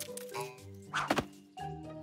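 Cartoon sound effect of a handful of seeds dropping onto the ground: a few short, soft thunks, the two loudest close together about a second in, over light background music.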